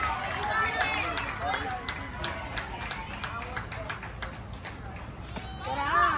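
Sharp hand claps in a steady rhythm, about three a second, over cheering voices, with a louder shout near the end.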